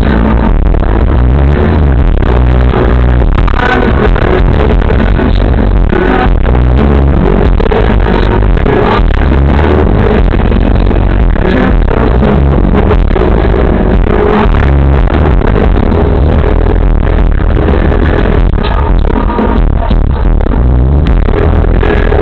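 Live rock band and singer playing at a concert, recorded close to full scale without a break, so the sound is muddy and distorted, with a heavy, smeared bass and no top end.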